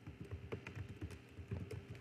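Computer keyboard being typed on: a quick, irregular run of key clicks as an email address is entered.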